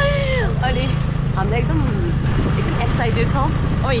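A small motorbike engine runs steadily while riding, with women's voices talking over it.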